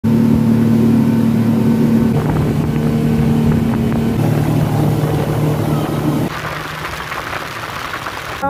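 Twin Yamaha 250 outboard motors running at speed: a steady engine drone over the rush of the boat's wake. The sound shifts abruptly a few times, and from about six seconds in the engine tone drops back and a hiss of wind and water takes over.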